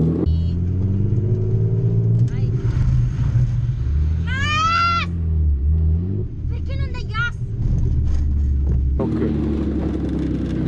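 Drift car's engine running at low revs, heard from inside the stripped cabin, with a high-pitched voice crying out twice, a longer arching cry about four seconds in and a shorter one around seven seconds.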